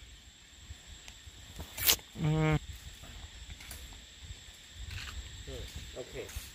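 A sharp click, then a single short vocal sound held on one steady pitch, like a brief hummed "mmm", about two seconds in, over a low outdoor rumble.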